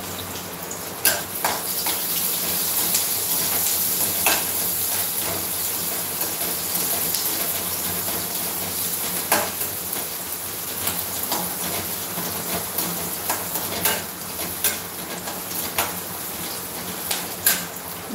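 Food sizzling as it fries in a pan on a gas stove, a steady hiss, with a handful of sharp clinks of a spoon against the pan as it is stirred.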